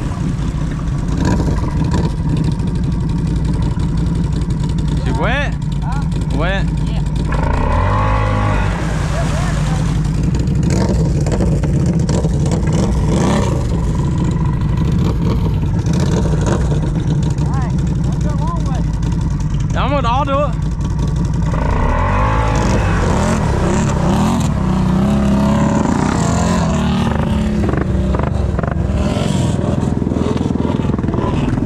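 Snorkeled ATV engine running steadily under load as the machine churns through deep mud and water.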